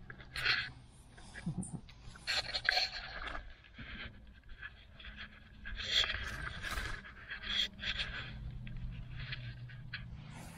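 Dry fallen leaves rustling and scraping in several irregular bursts, with a low steady hum underneath.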